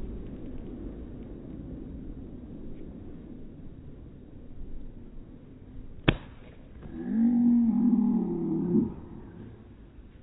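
A single sharp slap on someone's back, a "five star" hand slap, about six seconds in, followed by a loud yell of pain lasting about two seconds that climbs in pitch near its end. A steady low rumble sits under it all.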